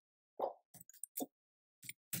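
Computer keyboard keystrokes: about six soft, short clicks at uneven spacing.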